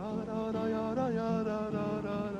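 A man singing long held notes with acoustic guitar accompaniment; his voice rises in pitch at the start and again about a second in.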